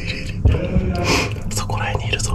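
A man whispering and breathing close to the microphone in short breathy bursts, over quiet background music.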